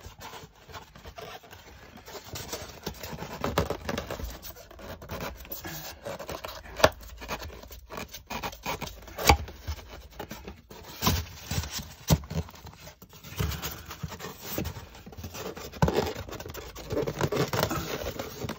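A foil-taped craft-foam airflow insert rubbing and scraping against the air conditioner's housing as it is pushed up into a tight-fitting opening, with a few sharp knocks.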